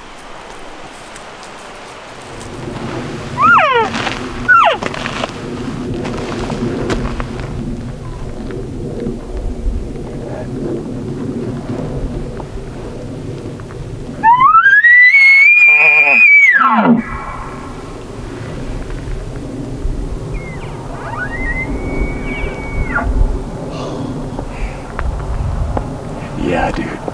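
Bull elk bugling: a faint high whistling bugle a few seconds in, a loud one midway that climbs to a high held whistle and falls away after about three seconds, and a fainter one near the end.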